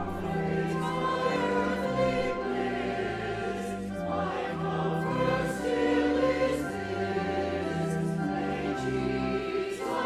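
Church choir singing an anthem, with long held notes of an accompaniment beneath the voices.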